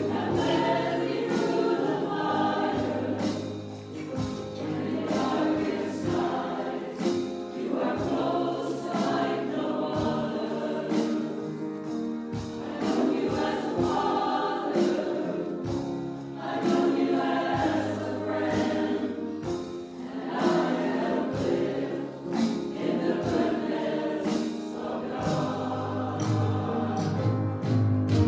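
Small church choir, mostly women's voices, singing a sacred piece in phrases, with steady low held notes sounding underneath.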